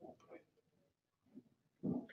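A low-level pause with faint, broken fragments of a person's voice, then a brief louder vocal sound near the end.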